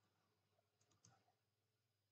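Near silence with a faint steady hum, broken about a second in by three quick faint clicks of computer keys as code is edited.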